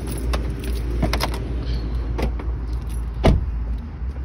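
Car keys jingling and several sharp clicks and knocks as someone handles the keys and gets out at a car's open door. The loudest knock comes near the end, over a steady low rumble.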